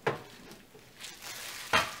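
Small objects handled and set down on a table: a sharp click at the start, light rustling, then a louder knock near the end.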